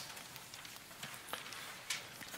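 Whiteboard eraser rubbing across the board, a faint soft hiss, with a light click near the end as something is set down on the board's tray.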